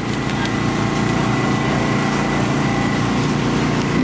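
An engine running steadily, with a thin high whine over it.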